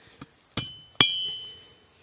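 Two hammer blows, about half a second apart, on a liquid-nitrogen-chilled brass rod lying on a steel anvil. The second blow is louder and leaves a high metallic ring that fades over most of a second. The brass bends under the blows instead of shattering.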